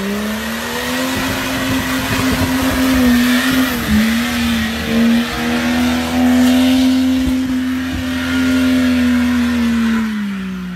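Jeep Cherokee XJ engine held at high revs as the Jeep spins its tyres through deep mud, with mud spraying off the wheels. The revs climb in the first second, dip briefly about four seconds in, then hold steady.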